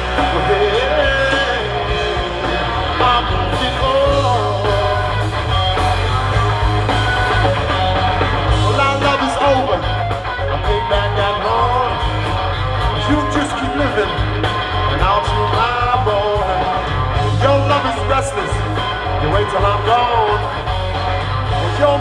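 Live rock trio of electric guitar, bass guitar and drum kit playing a passage without lyrics, loud and continuous, with a heavy bass line and an electric guitar line whose notes bend up and down in pitch.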